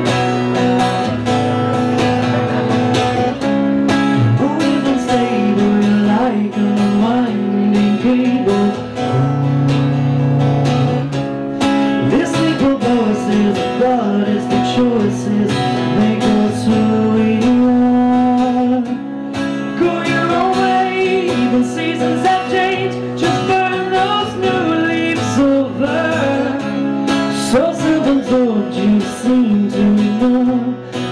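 Two acoustic guitars strumming and picking a song, with a man singing over them from a few seconds in.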